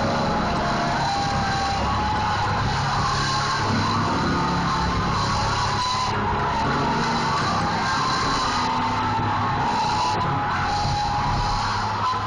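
Mass choir and band performing an old-time gospel chorus live, loud and continuous, picked up on a cell phone's microphone.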